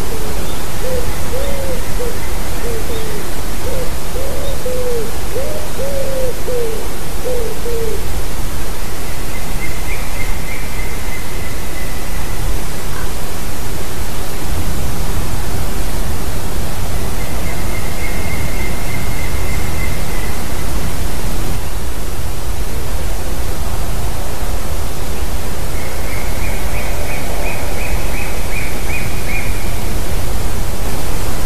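A young bird calling repeatedly from out of sight. A run of about ten short rising-and-falling calls comes in the first eight seconds, then three fainter, higher trilled calls, all over a loud steady hiss of wind or microphone noise.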